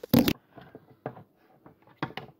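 A brief loud rustling knock, then a few faint light clicks, as the white plastic hazard flasher relay and its wiring connector are handled.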